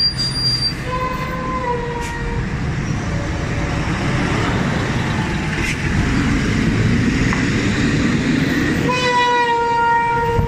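City buses and heavy road traffic passing close by, the engine and road noise getting louder about six seconds in as a bus goes past. A vehicle horn sounds for about a second near the start and again, longer, near the end.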